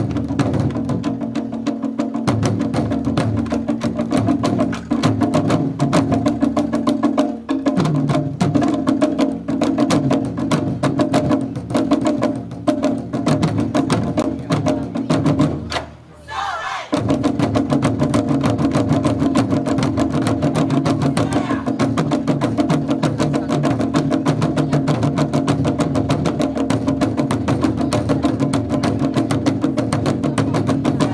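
Taiko drum ensemble playing a fast, dense rhythm of strokes over music that holds steady notes. The sound drops out for about a second around the middle, then resumes.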